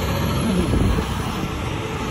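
Road traffic passing close by, with a tractor-trailer rolling past in the near lane: a steady rush of engine and tyre noise.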